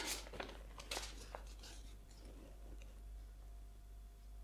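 Faint rustling and crackling of a folded paper leaflet being opened out in the hands, mostly in the first second and a half.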